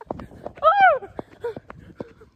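A high-pitched human voice lets out one drawn-out squeal that rises and then falls, about half a second in. Short knocks from the phone being jostled sound around it.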